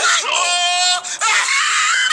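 A person screaming: a held, flat-pitched yell lasting about half a second, then a noisy rush of sound near the end.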